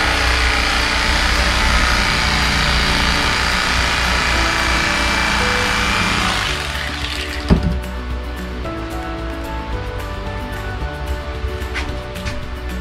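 Electric carving knife running, its motor whining as the blades saw through the wax cappings on a frame of honey; it stops about seven seconds in. A sharp knock follows, then background music.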